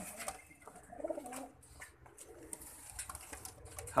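Teddi domestic pigeons cooing softly, with a low coo about a second in.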